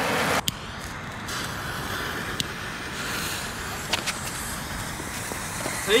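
Ground fountain firework burning: a steady hiss of spraying sparks with a few sharp pops scattered through it. A louder hiss stops abruptly about half a second in.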